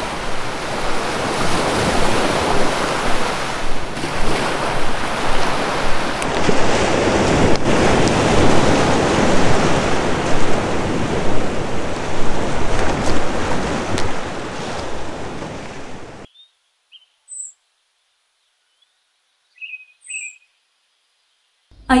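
Sea surf washing onto a beach, a steady rushing that cuts off abruptly about sixteen seconds in. After it, a few brief, scattered bird chirps.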